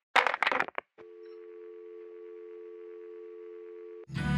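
A brief snatch of voice, then a click about a second in as the phone line drops, followed by a steady two-tone telephone dial tone: the call has ended.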